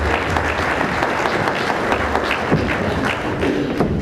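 Audience applauding: many hands clapping densely and steadily.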